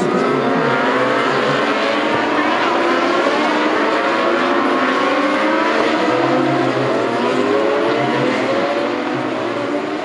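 A pack of 600cc supersport racing motorcycles, several engines at high revs at once, their pitch rising and falling as they accelerate and shift through the corners. The sound eases a little near the end as the bikes move away.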